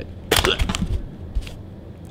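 Polaroid SX-70 film cartridge being pulled out of the camera's open film compartment by its tab: a sharp plastic click about a third of a second in, then a few softer clicks and a low knock.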